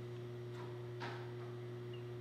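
Steady low electrical hum of shop machinery, with a brief soft rustle about a second in.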